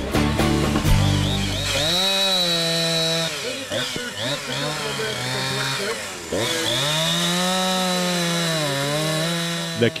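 Gas chainsaw running at high revs as it carves into a wooden block. Starting about two seconds in, its engine pitch sags and climbs again several times as the chain bites into the wood and frees up.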